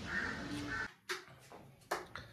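A bird calls twice over outdoor street ambience. About a second in, the sound cuts to a much quieter room with a few light clicks of kitchen dishes.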